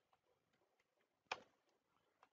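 Faint computer keyboard key clicks as a word is typed, a few scattered ticks with one clearer click a little over a second in.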